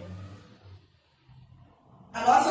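Quiet pause with a faint low hum, trailing off from the end of a woman's spoken word in the first moment.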